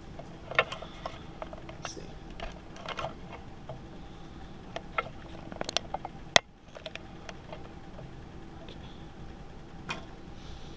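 Handling noise from a camera being repositioned on its mount: scattered small clicks and knocks, with one sharp click about six seconds in.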